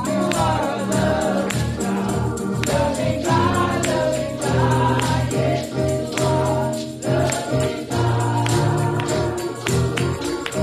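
Gospel worship song: voices singing over a band with a steady bass line, a tambourine, and hands clapping along on the beat.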